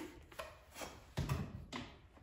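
Faint handling noises: a few light knocks and rubs as the rubber duckbill check valve is worked against the plastic parts of a macerator toilet.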